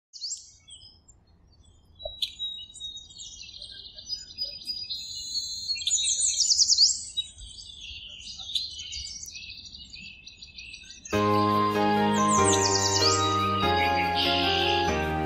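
Birds chirping and singing, a mix of short chirps, trills and quick rising sweeps. About eleven seconds in, instrumental music starts, louder than the birds, with the birdsong still heard over it.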